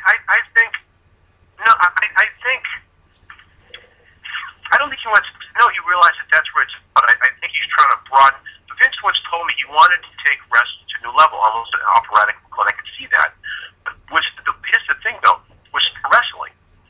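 Speech only: a person's voice talking over a telephone line, narrow and thin in tone.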